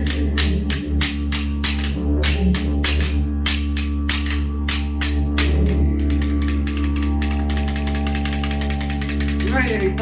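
Didgeridoo droning steadily under boomerangs clapped together as clapsticks: the clapping keeps a slow beat of about two strikes a second, then speeds up about six seconds in into a fast, even roll. A voice calls out right at the end.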